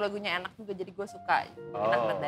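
A woman singing a short phrase with a wavering, sliding pitch, over background music.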